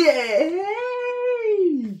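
A man's long, drawn-out cheer of "yay" (Japanese イエーイ), rising and then held on one high pitch before falling away near the end.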